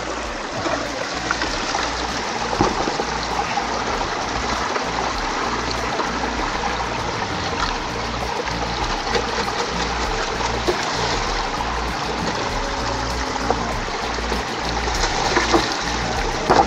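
Steady rush of mountain-stream water, with water running through a metal gold-prospecting sluice box.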